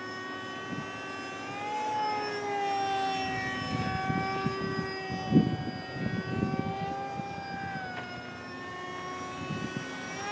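Radio-controlled Icon A5 model airplane flying overhead: its motor and propeller make a steady whine that slowly rises and falls in pitch as it circles. Gusts of wind buffet the microphone in the middle, the loudest a little past halfway.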